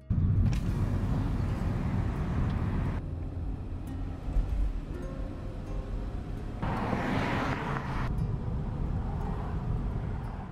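Car driving along a road, heard from inside the cabin: a steady low rumble with tyre and road noise. The sound shifts abruptly twice where clips are spliced, with a louder, hissier stretch of road noise around seven seconds in.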